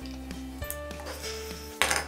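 Magic Meemees electronic toy figures giving off a short run of steady beeping tones that step from pitch to pitch as they react. A sharp click near the end.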